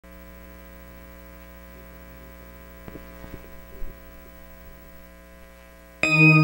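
Steady electrical mains hum on an otherwise silent audio track, with a few faint clicks between about three and four seconds in.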